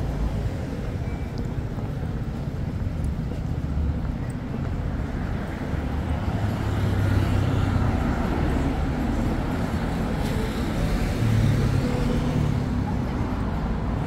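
City street traffic: cars and a motorbike driving past on the road, a steady rumble that swells twice as vehicles pass, around the middle and again near the end.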